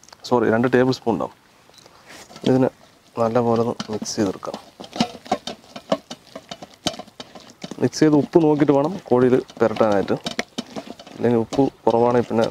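A person talking in short phrases, with quiet wet sounds of a hand mixing spice paste in a steel bowl in a lull about halfway through.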